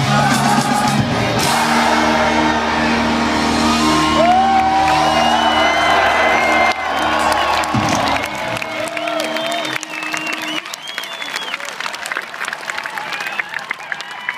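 A live rock band's closing chord held and ringing out, stopping about eight or nine seconds in, while a large festival crowd cheers and whoops; after the music stops the crowd keeps cheering and clapping.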